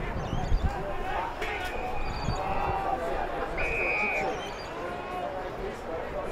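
Players and spectators calling out at a football ground, with a few dull thumps near the start and a short, steady, shrill tone about three and a half seconds in.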